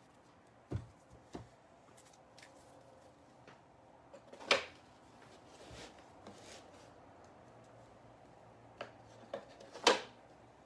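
Mostly quiet room with a few short knocks and rustles, the loudest about halfway through and a cluster of small ones near the end.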